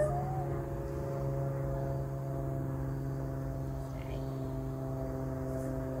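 Steady droning hum made of several held low tones, like a machine running without a break.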